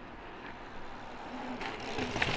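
Quiet city street ambience: a low, steady hum of road traffic, with a few faint clicks and knocks near the end.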